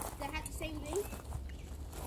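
Faint talk from people in the background, over a steady low rumble.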